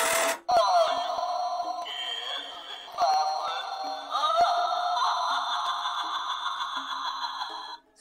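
Battery-powered pumpkin talking doorbell playing its recorded sound through its small speaker: a spooky voice over music, in several phrases. It cuts off abruptly near the end.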